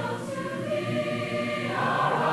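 Background music of a choir singing sustained chords, moving into a new, brighter chord near the end.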